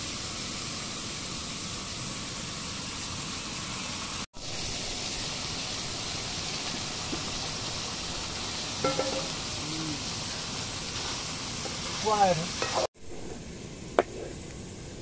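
Cauliflower and potato curry sizzling steadily in a hot pan. The sound drops out suddenly for a moment about four seconds in, and stops near the end.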